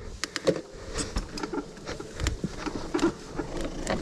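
Mountain bike clattering down a rocky trail: irregular knocks and rattles from the tyres, chain and frame as it drops over rocks.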